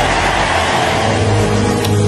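A church congregation's loud, steady roar of response over sustained keyboard chords, with no clear words.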